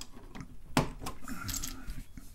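Plastic keycap pushed onto a TRS-80 Model 4 key switch and the key pressed, giving short hard plastic clicks; one sharp click about three-quarters of a second in is the loudest, with lighter clicks and rattles after it.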